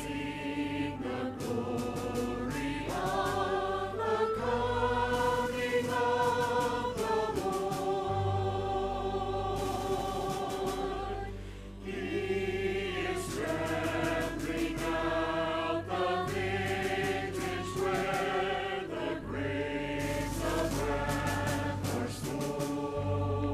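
Mixed church choir singing, holding long chords that shift every second or two over a steady low accompaniment, with a brief break between phrases about halfway through.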